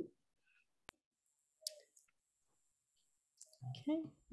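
A single sharp computer-mouse click about a second in, with a brief faint noise a little later, over near silence; a voice comes in near the end.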